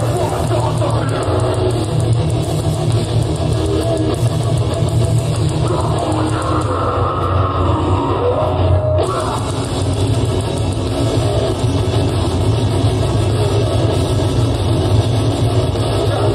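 Live metal band playing loud and continuous, with heavily distorted electric guitars and a drum kit.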